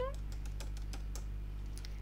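A scatter of light, sharp clicks and taps at an uneven pace, like typing, over a steady low electrical hum.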